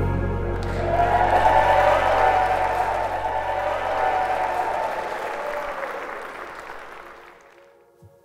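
A congregation applauding after the couple's kiss, over soft background music. The applause and music fade away over the last few seconds.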